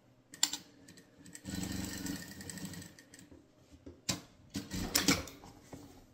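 Sewing machine stitching in one short run of about a second and a half, then stopping. Sharp clicks and rustles of fabric being handled come just before the run and again in the last two seconds.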